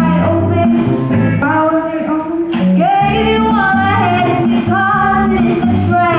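A woman singing a song into a microphone, amplified, with a live band of electric guitar, drums and keyboard playing along.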